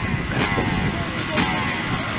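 A crowd of off-road motorcycles heard from across the field, engines idling and warming up, with a couple of short revs falling away.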